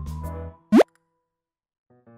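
Light background music cuts off about half a second in, then a single short, loud "bloop" sound effect sweeps quickly upward in pitch, followed by silence until the music starts again at the very end.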